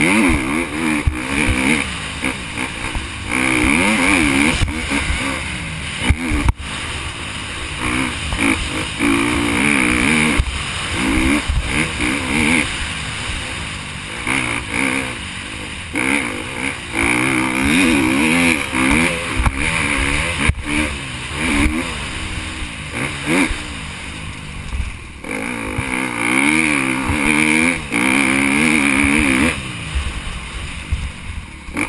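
KTM motocross bike's engine revving hard and backing off over and over as it is ridden round the track, its pitch climbing and dropping with each straight and corner. Heard from a helmet-mounted camera, with wind and track noise over the engine.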